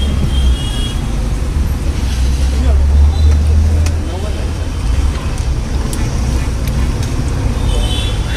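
Steady low rumble of street traffic, heavier in the first half, with faint voices in the background.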